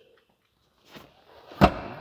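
Rear seatback of a 2022 Dodge Charger being swung up from folded-flat and latching into place: faint movement noise, then one sharp thud about a second and a half in.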